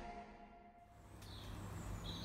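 Background music fading out, followed by faint outdoor ambient noise.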